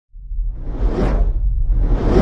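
Whoosh sound effect from an animated logo intro, swelling to a peak about a second in over a deep low rumble, with a second whoosh starting near the end.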